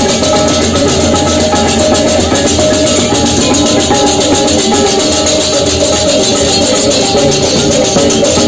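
Balinese gamelan beleganjur processional ensemble playing loudly without a break. A row of handheld kettle gongs (reyong) is struck with mallets over clashing hand cymbals (ceng-ceng).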